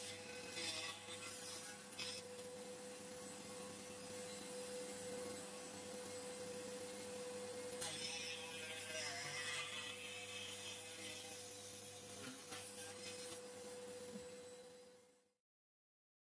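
Rotary tool spinning a small cutting wheel with a steady whine while it cuts grooves into the sides of a wooden box, the rough sound of the wheel biting the wood rising about halfway through. The sound cuts off suddenly shortly before the end.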